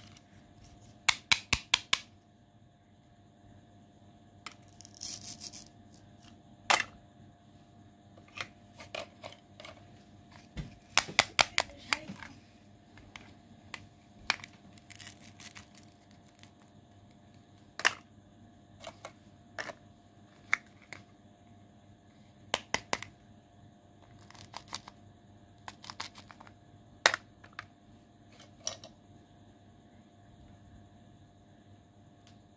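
Hollow plastic toy fruit and vegetable pieces clicking and knocking against each other as they are handled, in sharp separate clicks, some coming in quick runs of three or four.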